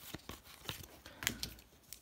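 Hockey trading cards being flipped through by hand: a string of quick, irregular flicks and slides of card stock.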